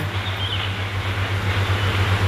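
Steady low hum with a constant background hiss.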